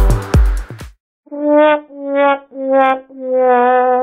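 A beat-driven electronic backing track stops about a second in. It is followed by a sad-trombone comedy sound effect: four brass notes stepping down in pitch, the last one drawn out, as a joke about the mess.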